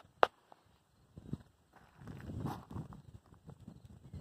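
A single sharp click just after the start, then soft, irregular shuffling and low thuds: footsteps and handling noise as the camera is carried closer along the rifle.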